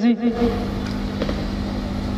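Steady mechanical noise with a low, even hum, like an engine running nearby, holding at a constant level.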